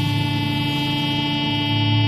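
Mouth-blown Scottish smallpipes playing, the drones sounding steadily under a single held chanter note.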